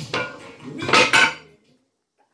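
Cast iron weight plates clanking together: two metallic clanks with a short ring, the louder one about a second in.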